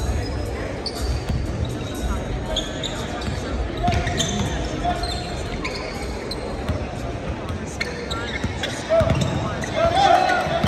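Basketballs bouncing on a gym floor as players dribble, with short high squeaks from players' movement between the bounces.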